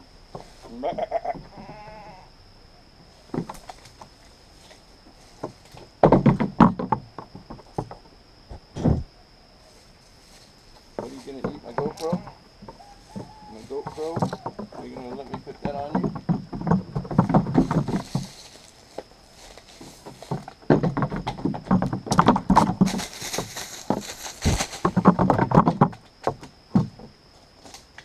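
Nanny goats bleating several times, with their hooves thumping and clattering on a wooden deck close by, loudest in bursts in the second half.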